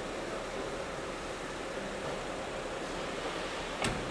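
Steady background hiss of an underground car park, with a car's rear door shutting once with a short thud near the end.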